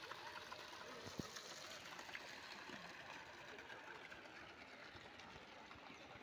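Faint, steady splashing of small garden fountain jets falling into a stone water channel, with one soft knock about a second in.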